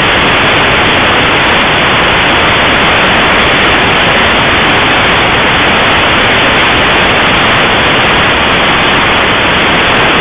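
Steady static hiss from a web SDR receiver in AM mode on the 10-metre band (27.995 MHz). No voice or carrier comes through.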